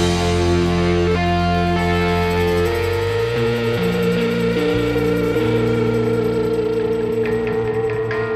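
Rock band playing an instrumental passage of long, ringing chords on electric guitars, bass guitar and keyboard. One held note wavers slightly, and the bass notes change several times in the second half.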